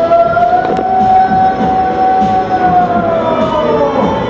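The song played for the Indiana Beach Haunted House animatronic band: one long siren-like held note that rises slightly, holds, then slides down near the end, with the backing music underneath.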